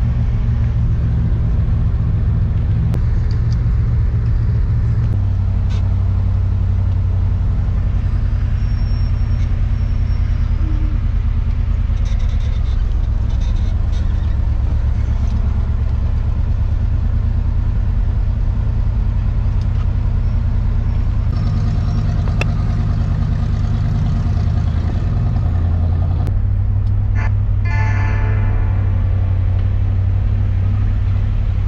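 Old pickup truck's engine and drivetrain running while driving, heard from inside the cab: a steady low drone whose pitch shifts several times as the speed changes, with faint music alongside.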